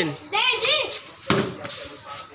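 A tennis ball struck in street cricket: one sharp knock about a second and a quarter in, with a lighter knock shortly after, following a child's call.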